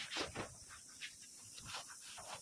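A cloth rubbing over the sheet-steel shelves of a steel almari in quick, irregular wiping strokes, several a second.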